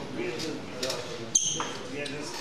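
Indistinct chatter of people in a large hall. One short, sharp knock rings briefly about one and a half seconds in.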